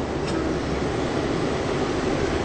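Steady engine and road noise inside a moving tour bus, a continuous rumble with no break.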